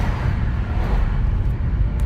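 Road and engine noise inside a moving car: a steady low rumble of tyres and engine, swelling briefly in the first second as another vehicle passes close alongside.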